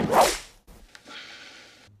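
A single sharp whip-like lash: something swung hard through the air and striking. It is loud at once and dies away within about half a second.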